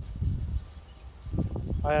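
Low, steady outdoor background rumble with a faint, thin, high bird chirp; a man's voice starts near the end.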